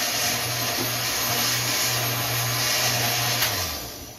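Countertop blender motor running steadily as it mixes a shake, then switched off and winding down to a stop near the end.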